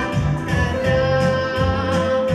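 Girl singing a song with a microphone over an instrumental accompaniment with a moving bass line, holding one long note through the second half.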